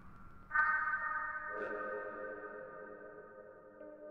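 Generative modular synthesizer patch, sine and Plaits voices fed through a Mutable Instruments Rings resonator and Beads granular processor, sounding bell-like struck tones. A higher ringing note with several overtones enters about half a second in and slowly fades. A lower note joins about a second later and rings on beneath it.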